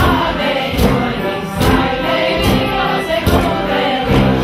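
Live folk music: a group singing together to brass accompaniment, with a drum striking a steady beat a little more than once a second.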